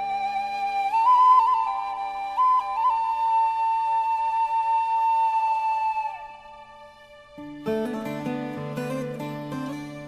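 Soundtrack music: a flute plays a slow melody over sustained low notes, ending on a long held note that fades out about six seconds in. Quicker notes enter over the low chord near the end.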